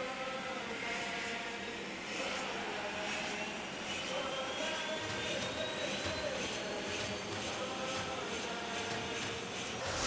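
A steady jet-engine-like roar with a thin whine that rises slowly in pitch: a sound effect under an animated TV intro.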